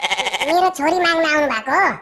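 A high, pitch-shifted cartoon voice. It quavers with a rapid pulse for about the first half second, then runs into drawn-out syllables with no clear words.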